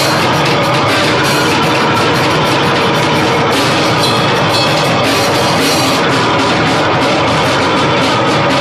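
Loud live band music with a drum kit played hard, cymbals struck again and again over a dense, continuous wall of sound.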